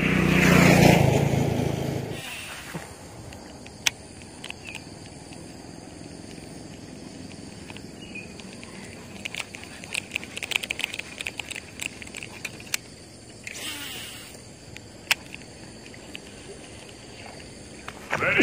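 A motor vehicle passing close by, loud for about two seconds and then fading away. After that there is a quiet outdoor background with scattered sharp clicks and ticks, bunched together near the middle.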